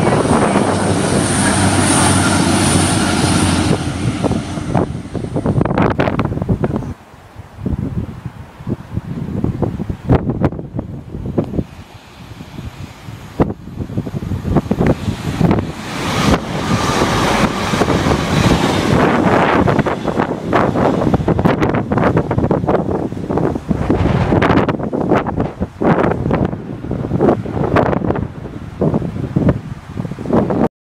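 A train running at the platform, its engine hum and a thin high whine steady for the first few seconds and then fading away about six seconds in. Gusty wind then buffets the microphone in uneven rushes, swelling again around the middle.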